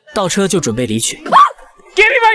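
A man's voice speaking for about the first second, then a brief rising vocal cry about a second and a half in.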